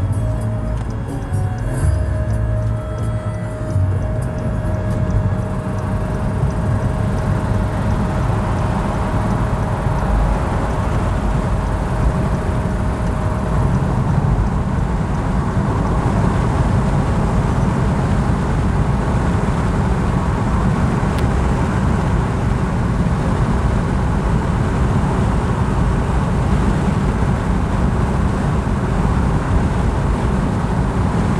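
Steady road and engine rumble inside a car's cabin at highway speed. Music plays over it in the first part and fades out within the first quarter to half.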